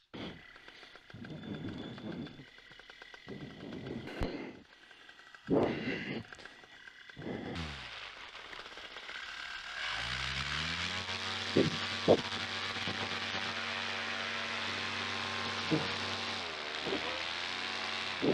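Paramotor engine throttled up about ten seconds in, its pitch rising and then holding steady at power for the launch run, with a brief dip near the end. Before that, scattered rustling and knocks of gear being handled.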